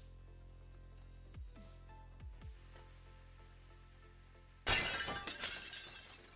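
Background music with a steady beat; about three-quarters of the way through, a loud crinkling burst of about a second as the foil wrapper of a trading-card pack is handled.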